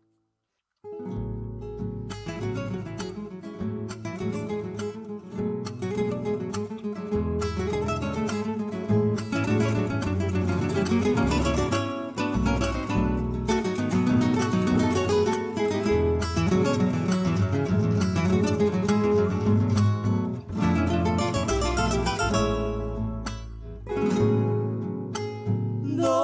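Instrumental introduction of a folk song, led by plucked acoustic guitar over bass notes. It begins about a second in, after a moment of silence.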